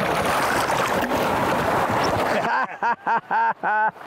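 Steady rushing wind-and-water noise on an open boat, which cuts off abruptly about two and a half seconds in. A man then laughs in four short, even bursts.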